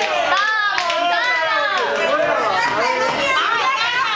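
A group of voices talking and calling out excitedly over one another, many of them high-pitched with swooping rises and falls.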